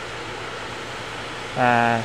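A steady rushing hiss of moving air fills the large warehouse, typical of its ventilation and fans running. Near the end a man holds a short, level hum of about half a second.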